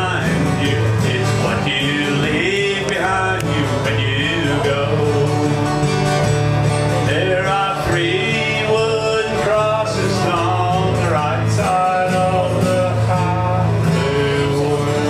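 Live country song: a man singing with acoustic guitar and plucked upright bass.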